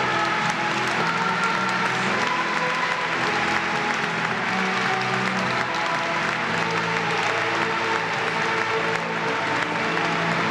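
Instrumental music with steady held notes, and an audience applauding over it throughout.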